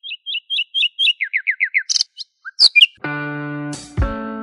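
Birdsong: a quick run of high repeated chirps, then five falling notes and a few sharp calls. About three seconds in, a strummed guitar chord starts a music interlude.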